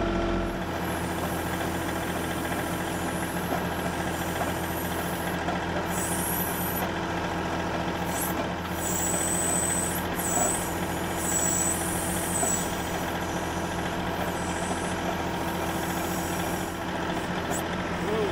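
Compact diesel tractor engine running steadily while its backhoe digs mud at a pond's edge. A high-pitched hydraulic whine rises and falls several times as the boom and bucket work, around the middle.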